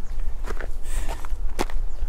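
A few footsteps of a walker outdoors, sharp steps about half a second and one and a half seconds in, over a steady low rumble of wind on the microphone.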